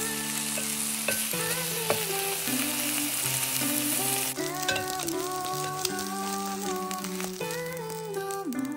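An oatmeal okonomiyaki frying in a nonstick pan just after being flipped: a steady sizzling hiss, loudest over the first four seconds or so and then dropping. Background music plays underneath.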